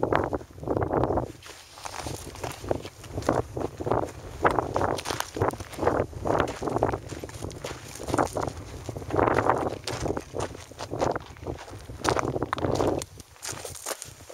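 Footsteps crunching on loose desert gravel, irregular, about two steps a second, over a steady low rumble.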